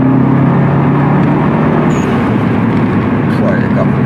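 Subaru Impreza WRX STI's turbocharged flat-four engine heard from inside the cabin while driving, a steady low drone over tyre and road noise.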